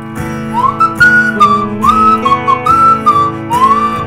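Plastic slide whistle played along to a recorded song with guitar accompaniment; the whistle comes in about half a second in, gliding up into each note and sliding between a few held notes. The accompaniment starts suddenly at the very beginning.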